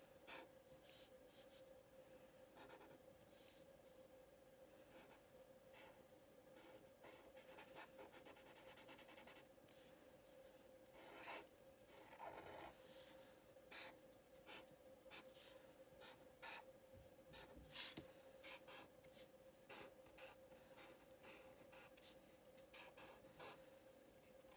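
Faint scratching of a Sharpie permanent marker drawing short, irregular strokes on paper, over a faint steady hum.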